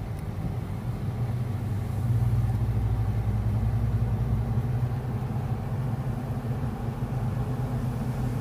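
Car engine and road noise heard from inside the cabin while driving, a steady low rumble that grows a little louder about two seconds in.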